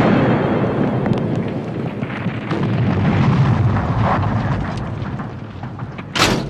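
Explosion of a crashed light plane: a long, rumbling fireball blast with a few crackles, slowly dying away.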